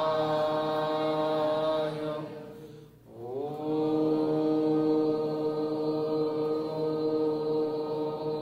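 Chanting of a Shiva mantra, sung in long drawn-out held notes. The voice breaks off for a breath about three seconds in, then slides up into another long held note.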